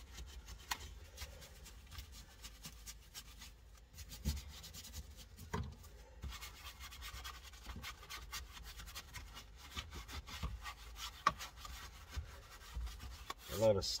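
Detailing brush scrubbing the plastic trim of a car's centre console: repeated scratchy rubbing strokes with occasional light knocks, agitating cleaner into spilt-drink stains.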